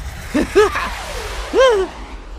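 A cartoon character's short, high-pitched vocal exclamations: two or three quick rising-and-falling calls about half a second in and one longer arched cry near the end, over a low steady rumble.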